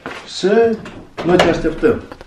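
A person's voice in two short utterances, with a sharp click about one and a half seconds in.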